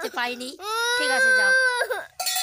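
A young girl crying: a couple of short whining sounds, then one long, high, drawn-out wail lasting about a second and a half that breaks off abruptly.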